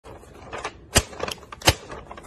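A sheet of paper being shaken and crinkled in the hand, with a few sharp snaps over a light rustle; the loudest snaps come about a second in and near the end.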